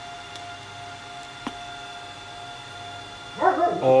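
A faint, steady electronic whine from the radio bench gear while the radio is keyed into the Messenger 4V linear amplifier, with a single click about a second and a half in. A voice begins near the end.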